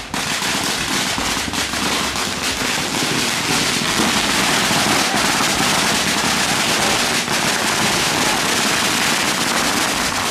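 A long string of firecrackers going off in a dense, rapid, continuous crackle of pops.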